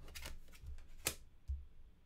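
Small game cards being slid and set down by hand on a wooden tabletop: faint rustles and taps, with one sharper tick about a second in.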